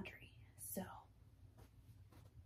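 A short, soft whispered vocal sound from a woman about half a second in, falling in pitch. After it, near silence with faint room tone.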